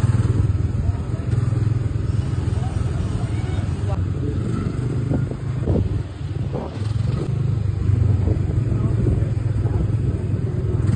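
Small engine of a ride car running steadily under way, a low hum that holds throughout, with short dips and surges as the car is steered along the track.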